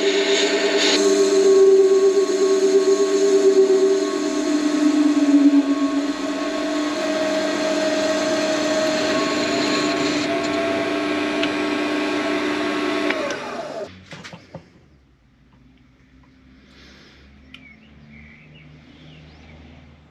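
Warco WM180 mini lathe running with a steady motor whine while a carbide insert cuts a freehand radius into the turning aluminium workpiece. About fourteen seconds in the spindle winds down and stops, leaving only faint handling sounds.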